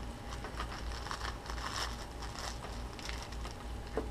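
Soft, irregular rustling and small clicks of hands handling a cloth drawstring pouch and the begleri cords inside it, with a sharper click near the end.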